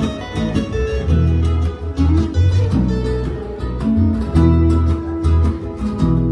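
Fijian sigidrigi string band playing: strummed acoustic guitars and ukulele over a steady bass line that changes note about once a second.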